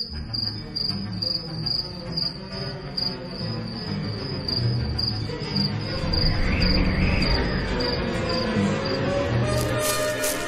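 Crickets chirping in an even, repeating pulse, over a low rumbling music drone.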